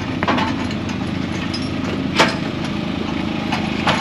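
Bobcat compact articulated loader's engine idling steadily, with three sharp knocks of equipment being handled, the loudest about halfway through.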